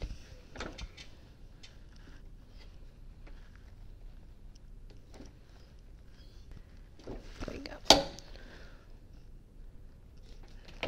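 Hotronix auto clam heat press being clamped down on a makeup bag for a two-to-three-second tack press: a couple of soft clunks in the first second, then a quiet hold with faint handling sounds, and one sharp clack about eight seconds in.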